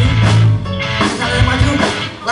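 Live rock band playing on stage: electric bass holding low notes under a drum kit beat and guitars, loud through the PA.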